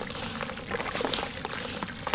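A water-soaked chunk of sand-cement crumbling as a hand squeezes it under water: fine gritty crackling, with water trickling and sloshing.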